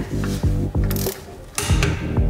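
Ratchet of a torque wrench clicking as it is swung back and forth, tightening a wheel bolt, over background music.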